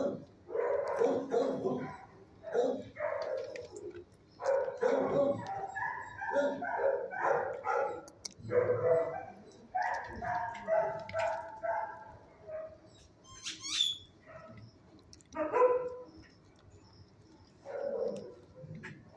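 Dogs barking in a shelter kennel: a long run of short barks in quick succession, easing off about two-thirds through, then a few more barks near the end. A brief high chirp sounds in the lull.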